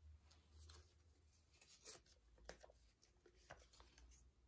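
Near silence, with a few faint, short scrapes and taps of a small painting card touching and dragging through wet acrylic paint on a canvas.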